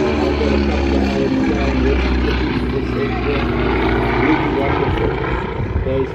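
Beechcraft 18's two Pratt & Whitney R-985 radial engines droning in a low flypast, the pitch falling as the aircraft passes overhead and draws away.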